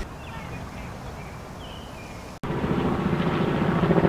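Helicopter flying overhead, its rotor beating in a fast, even pulse that starts abruptly about two and a half seconds in and grows slightly louder. Before it there is only faint outdoor ambience.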